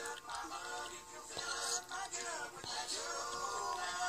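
A boy singing while playing an acoustic guitar, his voice carrying the melody over the guitar.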